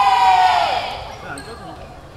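A long, high-pitched shout in a woman's voice, held on one note, its pitch sliding down as it fades out about three-quarters of a second in; quieter gym noise follows.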